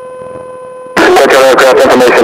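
A steady electronic hum for about the first second, then an airport ATIS broadcast starts loudly over the aircraft radio, a voice reading out the airport information.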